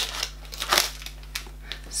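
Cardboard advent-calendar compartment and the small wrapped item inside being handled and pried out, the item sitting tight: light crinkling with a few short sharp clicks, the clearest about three-quarters of a second in.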